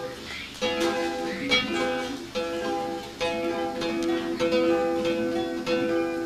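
Solo acoustic guitar playing a song's instrumental introduction, single plucked notes one after another, each left to ring under the next.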